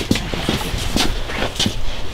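Irregular knocks and scuffs of wooden-framed screen-printing screens being handled, with footsteps.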